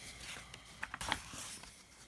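A picture book's paper page being turned, rustling and sliding, with a few small crackles about a second in.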